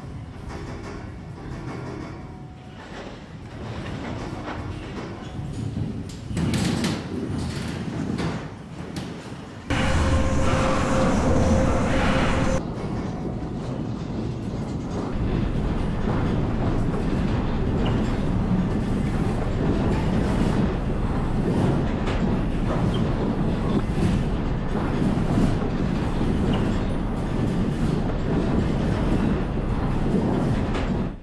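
Low rumbling with scattered rattles and knocks as a mass timber building is shaken on a shake table through a simulated magnitude 7.7 earthquake. About ten seconds in there is a louder stretch of a few seconds with a steady hum.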